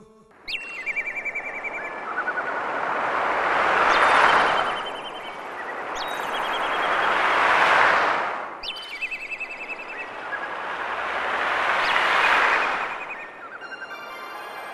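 Nature sound-effect intro: a rushing noise swells and fades three times, about four seconds apart, under bird chirps and short trills, with a few sharp clicks.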